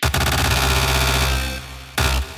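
Melodic progressive electronic dance music. After a quiet pad passage it comes in suddenly at full loudness with a heavy sustained bass line, eases slightly, then lands a fresh hit near the end.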